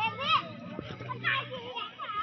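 Several young children chattering and calling out in high voices, with adults talking among them.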